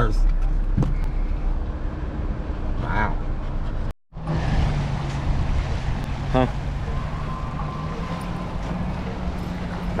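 Low steady rumble of a car rolling slowly, heard inside the cabin. After a short dropout comes steady outdoor noise of wind and small waves washing onto a sandy shore, with a low steady hum underneath.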